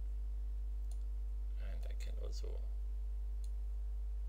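Steady low electrical hum throughout, with two faint computer mouse clicks, one about a second in and another near the end.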